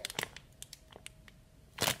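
Soft clicks and light crinkles of a sealed plastic bag holding a squishy toy being handled, in a quiet small room, with one short, louder rustle near the end.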